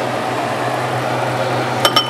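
A stainless steel skillet is handled over a ceramic bowl, giving one sharp ringing clink of metal on the bowl near the end, over a steady low kitchen hum.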